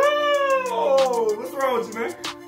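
A young boy's high-pitched playful squeal, falling in pitch over about a second, followed by a second, shorter falling squeal near the end.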